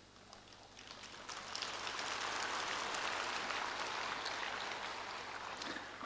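Audience applause: many hands clapping together, swelling up about a second in, holding steady, then thinning out near the end, fairly quiet as picked up by the lectern microphone.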